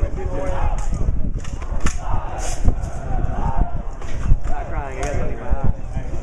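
Indistinct talking among a small group, with wind rumbling on the microphone throughout. From about four and a half seconds in, one voice rises and falls in pitch for about a second.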